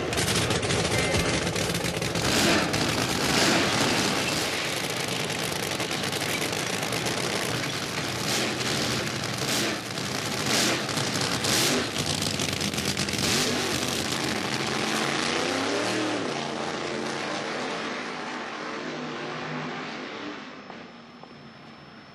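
Drag-racing funny car engine running very loud and rough, with sharp repeated blips as the throttle is worked. It rises and falls in pitch a little past the middle, then fades as the car moves away near the end.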